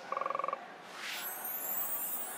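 Broadcast transition sound effects as the picture changes: a short rapid buzzing tone lasting about half a second, then a whoosh about a second in and a faint high falling sweep.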